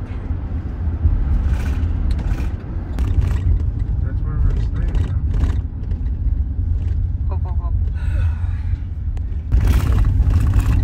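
Steady low rumble of a car's engine and tyres heard from inside the cabin while driving, with faint voices in the background.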